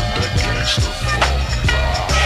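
Slowed-down, chopped-and-screwed hip-hop beat with no rapping: a heavy, deep bass line with some sliding notes, under sharp drum hits.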